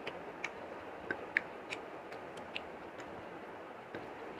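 Eating rice and curry by hand: irregular small wet clicks and smacks over a steady hiss, the sharpest about a second and a half in.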